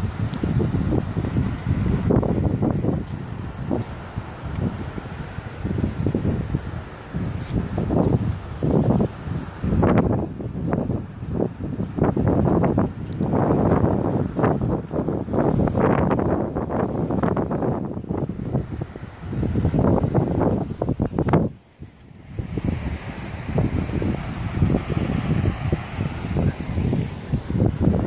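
Wind buffeting a mobile phone's microphone in irregular gusts, with a short lull a few seconds before the end.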